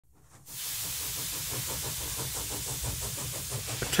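Steam hissing steadily, starting about half a second in, with a faint fast rhythmic beat underneath.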